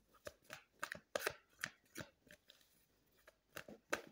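Tarot cards being handled to draw a card: a string of short, crisp clicks at an irregular pace, with a brief lull a little past the middle.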